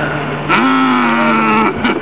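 A loud, long moo-like voice call starting about half a second in and lasting just over a second, sliding slightly down in pitch, then breaking off into choppy fragments, over a steady low engine hum.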